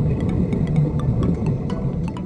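Underwater rumble of air bubbling out of a diving helmet's air supply, with irregular sharp clicks a few times a second.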